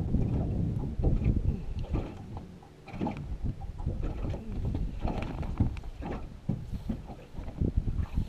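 Wind buffeting the microphone over small waves slapping and lapping against the hull of a flat-bottomed jon boat, in irregular splashes and knocks. It eases off briefly a little before the middle.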